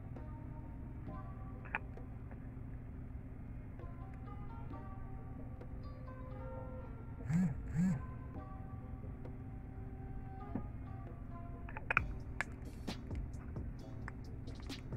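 Soft background music, with a mobile phone's vibration alert buzzing twice in quick succession about halfway through, the loudest sound here. A few light clicks and taps near the end.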